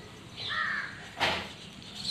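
A bird calling: a short pitched call about half a second in, then a brief harsh call just after a second.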